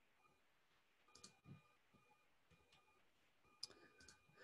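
Near silence with a few faint clicks of a computer mouse as a web page is scrolled.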